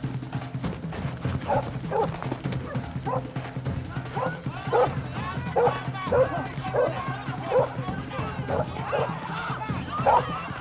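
A dog barking over and over, about one to two barks a second, starting about a second and a half in, over a steady low music score.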